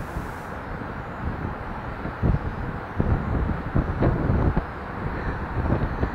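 Wind buffeting a body-worn action camera's microphone high up on an open structure, an uneven rumble with gusts, mixed with knocks from climbing on the steel ladder and scaffolding.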